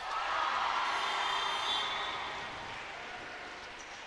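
Crowd in an indoor basketball arena cheering and applauding a made free throw, breaking out suddenly and then dying away over a few seconds.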